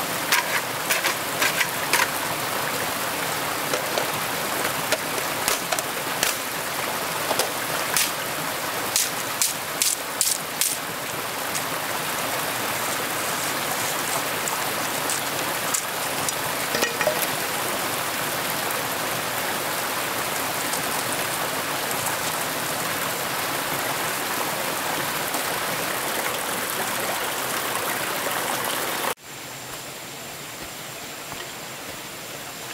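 Steady rain hiss, with many sharp drop ticks in the first dozen seconds, then more even; it drops away suddenly near the end.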